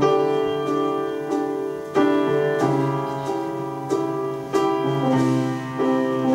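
Solo grand piano starting a song's introduction, playing full chords re-struck in a steady pulse about every two-thirds of a second.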